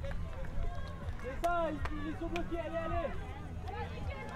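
Players' voices calling out and talking on the field, fainter than commentary and carried at a distance, over a steady low outdoor rumble.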